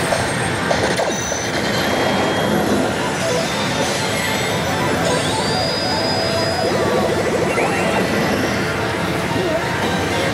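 Pachislot machine's electronic music and sound effects over the constant din of a pachinko hall, with a high rising tone about four seconds in and a fast fluttering effect near seven seconds.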